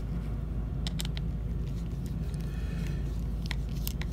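A Swiss Army knife's Phillips driver turning screws into a plastic knife sheath, giving a few light clicks of metal on screw and plastic, mostly about a second in and again near the end, over a steady low hum.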